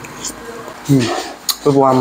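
Spoon and chopsticks clinking lightly against a ceramic noodle bowl while eating. A short voiced 'mm' comes about a second in, then one sharp clink, before a man starts speaking near the end.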